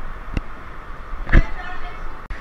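Water-park tube conveyor belt running as it carries riders in tubes uphill, with water washing over it, a single thump about one and a half seconds in and faint voices.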